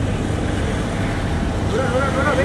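Steady low rumble of outdoor background noise, with faint voices coming in near the end.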